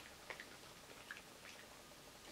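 Near silence, with a few faint, short clicks from a small dog chewing a treat.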